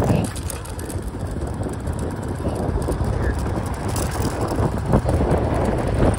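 Wind rumbling on the microphone over the running of a small motorbike engine, with a muffled voice.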